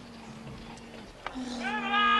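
A voice calling out loudly in one long, drawn-out shout that starts about one and a half seconds in, over faint outdoor ambience.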